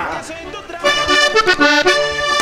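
Diatonic button accordion starting to play a vallenato tune about a second in, with a run of held chords that change every fraction of a second.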